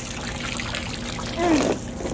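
Water pouring and trickling down from a water balloon squeezed open over a child's head, a steady spattering hiss.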